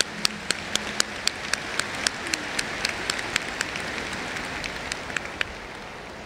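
Audience applauding in a large hall: a steady wash of clapping with single sharp claps standing out, dying down near the end.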